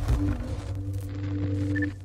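Synthesized logo-reveal sound effect for a channel intro: a steady low synth drone, with a couple of faint high pings near the end.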